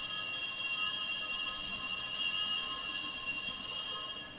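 Altar bells rung continuously at the elevation of the host during the consecration of the Mass: a steady, bright, high ringing that holds level and begins to die away near the end.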